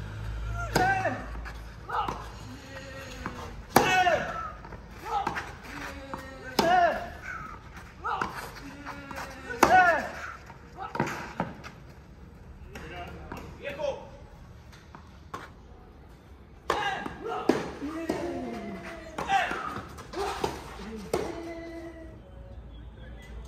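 Tennis rally on a clay court: a serve and then racket strikes on the ball about every three seconds, each with a short grunt from the hitting player. Near the end come several louder vocal shouts.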